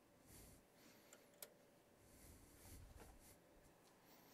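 Near silence: faint handling noises at the bench, soft rustles and one small sharp click about a second and a half in, over a faint steady hum.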